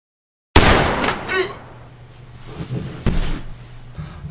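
A single loud gunshot sound effect about half a second in, cutting in sharply after dead silence and dying away over about half a second, followed by a short vocal grunt.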